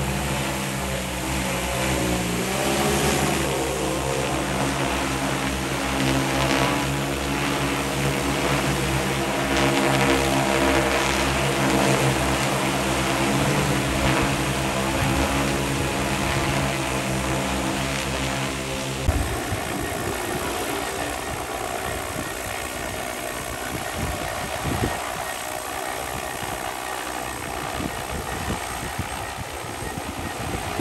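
Rotors of a large multirotor agricultural spraying drone, a steady hum with a constant pitch. About two-thirds of the way through it changes abruptly to a rougher, noisier whir.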